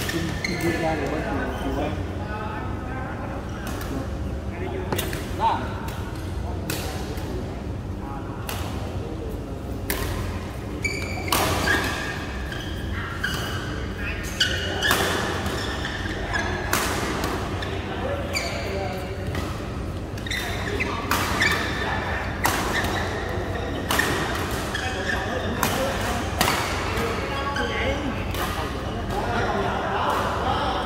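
Badminton rackets hitting a shuttlecock in doubles rallies: sharp hits, often a second or less apart, with short gaps between rallies, ringing in a large hall.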